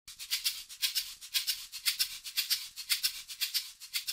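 Intro music of rhythmic shaker-like percussion, about four or five short strokes a second, thin and bright with no low end.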